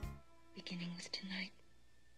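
Hushed film dialogue at low level: soft speech in short phrases, with a pause about halfway through.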